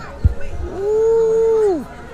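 A person's long, drawn-out 'ooh' of delight, held on one pitch and falling away at the end, starting about two-thirds of a second in. A short thump comes just before it.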